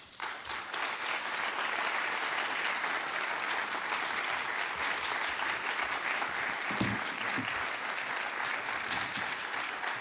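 Audience applauding steadily, a dense, even clapping that breaks out all at once.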